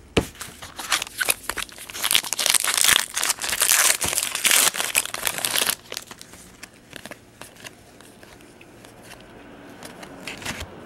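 Plastic wrapper of a trading-card pack crinkling and tearing open, loud for about the first six seconds, then quieter handling of the cards with light clicks.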